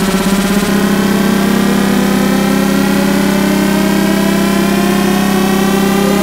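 Electronic tech house music in a build-up: layered synth tones slowly rising in pitch over a held low note.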